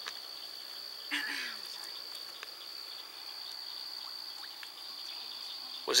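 Crickets trilling steadily, one high, even tone, with a brief faint sound with a short falling pitch about a second in.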